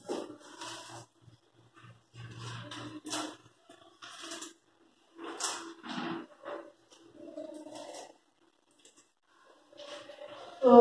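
Faint, irregular rustles and soft taps of a paper syllable card being handled and pressed flat onto a board.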